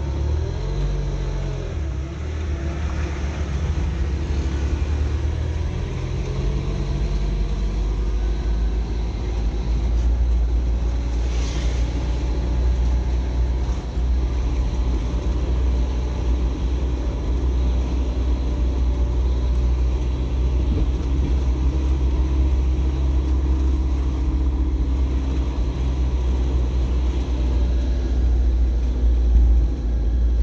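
Car engine and tyre rumble heard from inside the cabin while driving over a paving-block street. A deep steady rumble carries through, and the engine note shifts in pitch during the first few seconds.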